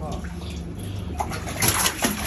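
Water churning and sloshing in a live-bait tank over a steady low hum, with louder splashes from about a second in as a fish thrashes at the surface.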